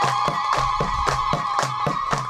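Crowd clapping in a steady rhythm, about four or five claps a second, under one long high-pitched held voice call.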